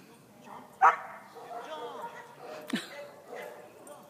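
A dog barking: a loud sharp bark about a second in and another near three seconds, with higher whining calls in between.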